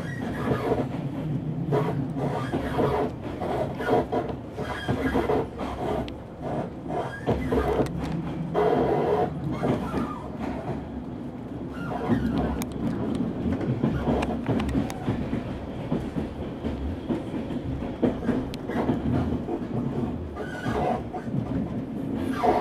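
A train running along the rails, heard from on board: a continuous rumble of wheels on track with irregular clicks and clatter.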